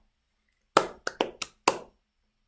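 Five short, sharp hand claps at uneven intervals, close to the microphone.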